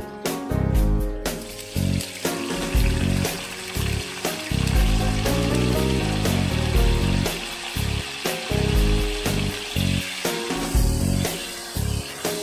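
Whole chillies, shallots, garlic and herbs sizzling steadily in hot oil in a wok from about a second in, under background music.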